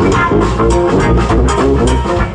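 Live brass-band music: a sousaphone playing a punchy bass line of short, repeated low notes over a drum kit, with guitar.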